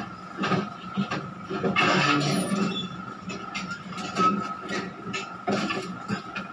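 Film soundtrack playing on a television and picked up through the room: irregular knocks and scraping sounds over a steady thin tone, with a louder noisy rush about two seconds in.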